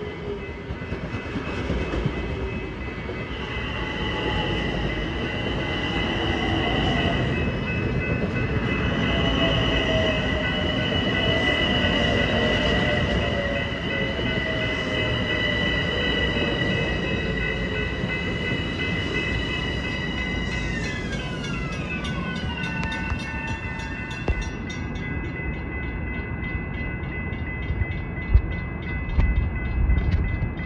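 Long Island Rail Road M7 electric multiple-unit train passing at speed, its wheels and running gear rumbling. High electric whines run through it and drop in pitch about two-thirds of the way through.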